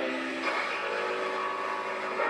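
Woodshop power tools running steadily: an electric jigsaw cutting a wooden board, with a shop vacuum drawing dust off the cut.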